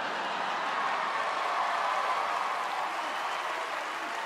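Studio audience laughing and applauding, a steady wash of sound that swells a little and then eases off.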